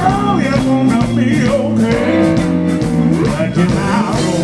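Live blues band playing, led by electric guitar, with a man singing over it.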